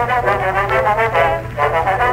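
Brass-led band playing the instrumental introduction to a comic song, in short phrases of held notes, over a steady low hum.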